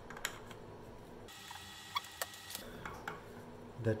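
A few faint clicks and knocks from the loosened shoe of a Ryobi 18V cordless reciprocating saw being jiggled back and forth in its mount.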